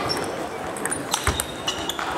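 Table tennis balls clicking off bats and tables in a sports hall, scattered sharp ticks from several games at once, over a murmur of voices.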